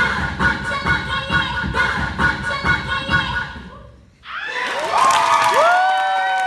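Dance music with a steady beat fades out about three and a half seconds in; a moment later the audience breaks into loud cheering, with long high-pitched whoops and screams.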